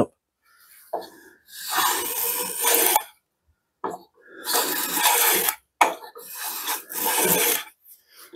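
Wooden shoulder plane with a freshly sharpened blade taking three strokes along the edge of a wooden board. Each stroke is a shaving cut about a second and a half long, and the plane is cutting cleanly.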